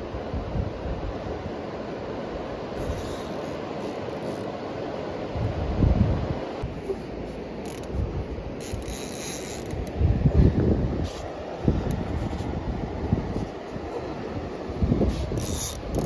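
Fishing reel being worked against the pull of a large hooked sturgeon, with a steady rush of river and wind, and several heavy low bumps of wind and handling on the microphone.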